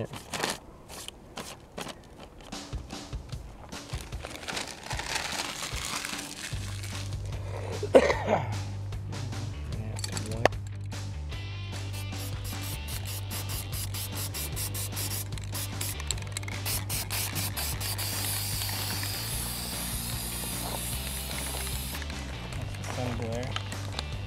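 Aerosol spray-paint can hissing, with a long hiss late on, over background music, along with crinkling of crumpled newspaper pressed onto wet paint to texture it.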